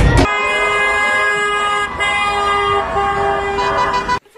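Several car horns honking together in long, overlapping blasts at different pitches, with a brief break a little under two seconds in.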